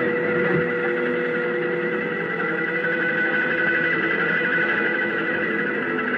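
Live rock band holding a sustained drone on electric guitar and keyboard: a steady high tone and a lower one over a rough, noisy wash, with no beat.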